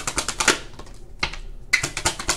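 A tarot deck being shuffled by hand: a fast run of papery card clicks, a short pause, then more clicks near the end.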